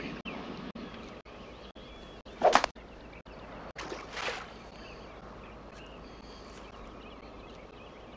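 A golf shot: a club strikes the ball with a short, sharp crack about two and a half seconds in, and about a second and a half later the ball splashes into a pond with a brief, softer splash. Faint outdoor background noise between.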